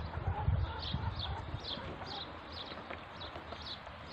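Muscovy ducklings peeping: short, high, falling calls repeated about twice a second, over soft knocking of bills pecking at a plastic feed dish in the first second or so.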